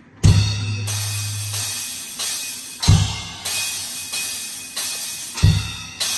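Drum kit: kick drum and crash cymbal struck together three times, about two and a half seconds apart, each crash ringing on, with lighter hits in between. A low bass note holds for about a second after the first hit.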